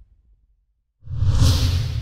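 A whoosh sound effect: a rushing swell with a heavy low end rises suddenly about halfway in, after a moment of near silence.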